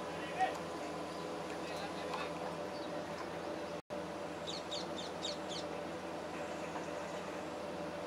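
Steady outdoor background noise with a faint hum. The sound cuts out for an instant about halfway through, then a bird gives a quick run of about eight high chirps.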